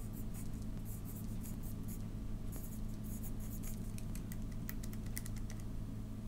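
Writing by hand on lined spiral-notebook paper: a run of short, scratchy strokes as numbers are written out, over a steady low hum.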